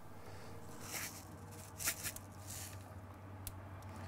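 Faint, soft rustles and light ticks as smoked salt crystals are scattered by hand onto raw ribeye steaks on a grill grate: a few brief rustles and a sharp click near the end, over a low steady hum.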